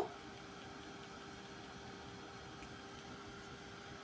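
Faint room tone: a steady low hiss with one constant hum and no distinct sound events.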